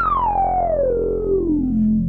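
Novation Circuit Mono Station's analogue state-variable filter at full resonance, its cutoff swept down over a held low sawtooth note. The resonant peak sings out as a screaming whistle that falls steadily from high to low.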